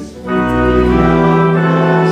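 A hymn played on church organ in sustained chords, with a short break between phrases just after the start before the next line begins.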